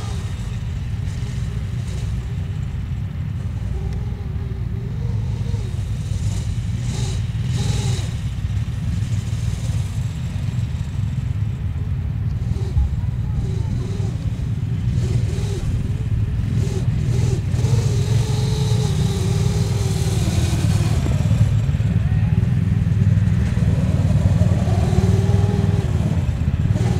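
Racing snowmobile engines running and revving on a snocross track, the engine pitch rising and falling, growing louder toward the end.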